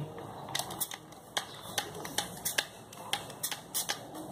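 Small trigger spray bottle misting liquid onto the face in a quick string of short spritzes, about three a second.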